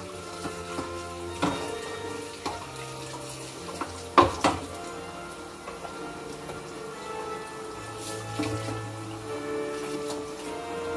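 Dishes and utensils clinking and knocking while being hand-washed at a kitchen sink, with a sharp double knock about four seconds in, over music with sustained notes.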